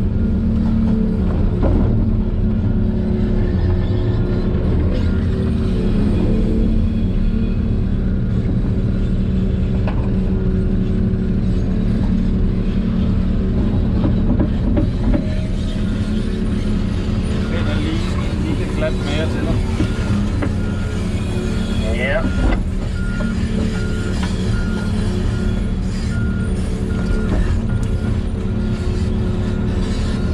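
Volvo EC380E excavator's diesel engine running steadily under load, heard from inside the cab as it digs and loads a dump truck. About two-thirds of the way through, a string of short, evenly spaced high beeps starts and keeps going almost to the end.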